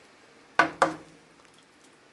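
Two sharp knocks about a quarter second apart: a wooden spoon tapped on the rim of a metal skillet.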